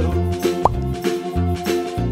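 Light, bouncy background music with a stepping bass line and a steady beat. A quick rising bloop-like glide sounds about two-thirds of a second in.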